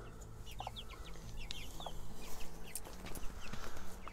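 Young chicks peeping in many short, high cheeps that slide downward, with an occasional lower cluck from their mother hen.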